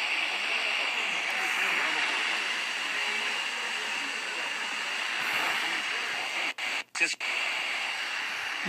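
Portable world-band radio tuned to 107.3 FM, giving steady static hiss with a weak station faintly under it. The sound cuts out briefly a couple of times near the end.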